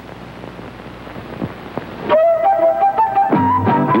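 Low hiss and hum, then about halfway a commercial jingle starts suddenly: a melody of notes stepping upward, with bass and other instruments joining near the end.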